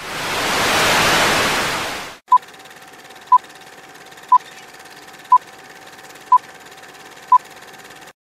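TV static hiss swelling and fading over about two seconds, then a film countdown leader sound effect: six short beeps, one a second, over a faint steady hiss and hum.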